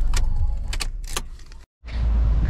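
A few sharp clicks and rattles inside a car cabin over a low rumble that fades out by mid-way, then a brief dropout to silence near the end.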